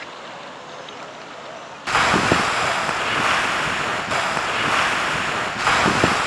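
A faint steady background, then about two seconds in an abrupt switch to a loud, steady rushing noise of surf or churning water.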